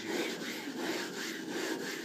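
A glass telescope-mirror blank is ground by hand against a tool with abrasive grit, hollowing out its concave curve. The grinding goes in steady back-and-forth strokes that dip about three times a second as each stroke turns.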